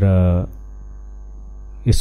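Steady low electrical mains hum through a pause in a man's speech into a microphone, with a spoken word at the start and his speech resuming near the end.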